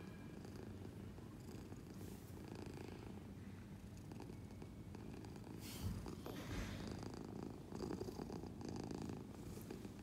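A domestic orange-and-white cat purring steadily while being stroked under the chin, with a couple of soft bumps and a rustle of fur or handling about six seconds in.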